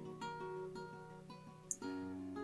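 Soft background music of plucked acoustic guitar, notes ringing one after another. A brief sharp click near the end.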